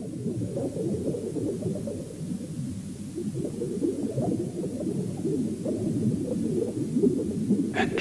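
Low, muffled murmur of many voices that keeps going without a break. Near the end comes a short, sharp, higher-pitched call whose pitch bends.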